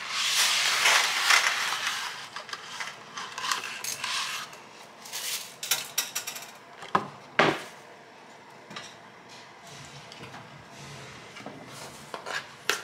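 Dry spaghetti rattling and rustling as it slides out of its package into a steel stockpot, loudest in the first two seconds. Scattered light clicks follow, and two sharp knocks about seven seconds in as the strands and hands meet the pot.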